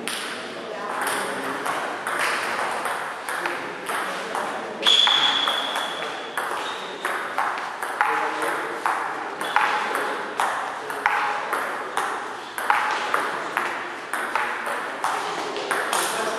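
Table tennis ball clicking off the table and the players' rubber-faced paddles in quick back-and-forth strokes during play. There is a brief high squeak about five seconds in.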